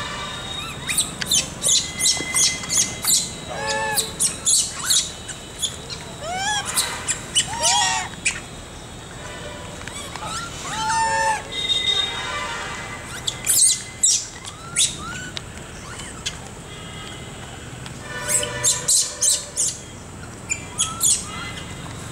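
Animal calls outdoors: bursts of rapid, very short high-pitched chirps alternating with short arched squawks, coming in clusters several times.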